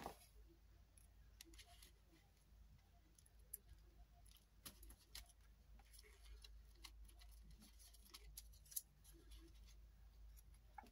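Near silence with faint, scattered clicks and taps from hands handling small paper-craft pieces and a glue bottle on a cutting mat, the sharpest tap right at the start and another near the end.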